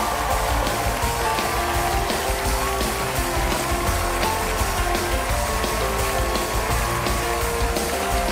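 A studio house band playing upbeat walk-on music with saxophones and a steady beat, over the studio audience's applause.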